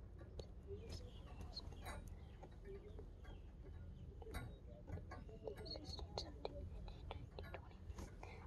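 Hushed near-quiet with soft whispering and scattered faint clicks and rustles from a handheld phone.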